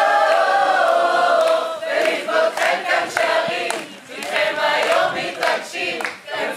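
A mixed group of men and women singing together in Hebrew, choir-style: one long held "ah" for the first couple of seconds, then shorter sung phrases with brief breaks.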